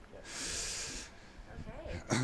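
A short, breathy exhale close to the microphone, lasting under a second, with a snort-like laugh quality. It is followed by faint, indistinct murmuring.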